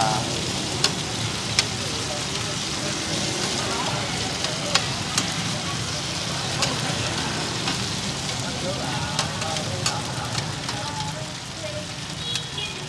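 Cubes of taro flour cake (bột chiên) sizzling steadily in hot oil on a wide flat pan. Metal spatulas clink and scrape against the pan a few times as the cubes are turned.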